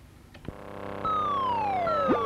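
BBC Micro computer sound effects: a low steady electronic drone starts about half a second in, then about a second in a high whistle glides slowly down in pitch, like something falling, with a second falling whistle starting near the end.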